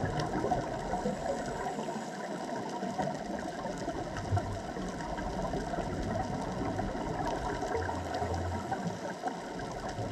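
Underwater reef ambience picked up through a camera housing: a steady crackling hiss with scattered faint clicks, and a low hum that comes and goes twice.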